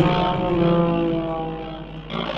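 Music: an electric guitar through effects holds a chord that slowly fades over about two seconds.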